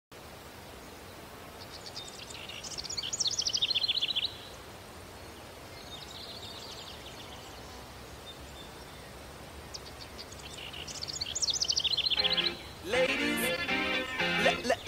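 A songbird singing two long phrases of rapid repeated notes that grow louder into a fast trill, with a fainter phrase between them, over a steady outdoor background noise. Music comes in about a second and a half before the end.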